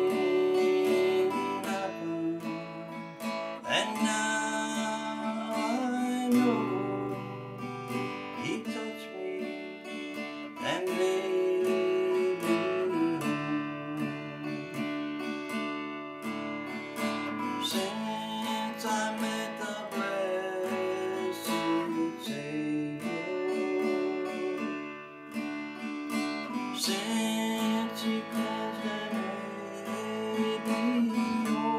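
Steel-string dreadnought acoustic guitar played in a steady run of strummed and picked chords, with a short dip in loudness a little before the end.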